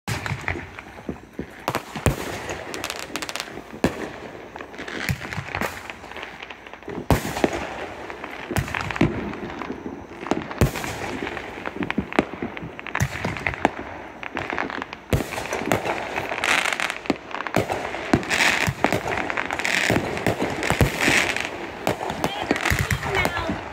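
Consumer aerial fireworks going off: many sharp bangs at irregular intervals over continuous crackling, as shells rise and burst overhead and across the neighbourhood.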